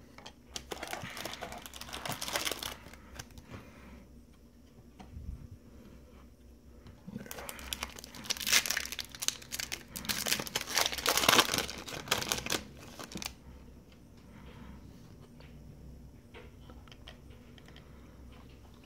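Foil wrapper of a trading-card pack being torn open and crinkled by hand, in two spells: a short one near the start and a louder, longer one in the middle, then quieter handling of the cards.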